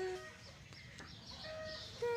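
A woman's held sung note ends just after the start, then a quieter stretch with faint, short, high chirping calls in the background.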